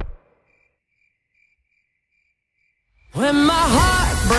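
Party music stops abruptly, leaving near silence with faint cricket chirps, a little over two a second, the stock sound of an awkward silence. About three seconds in, music with a singing voice comes in.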